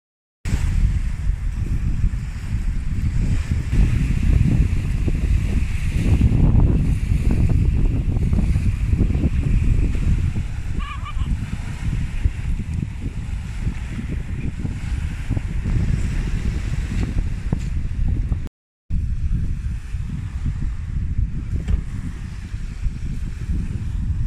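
Small sea waves washing up on a sandy beach, heavily overlaid by wind buffeting the microphone with a gusty low rumble. The sound cuts out briefly about three-quarters of the way through.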